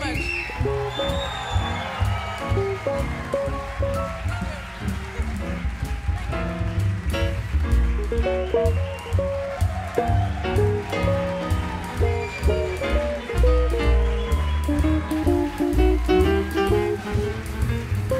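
Live jazz quartet playing: guitar, piano, upright bass and drums, with short melodic notes over pulsing bass and cymbal strokes.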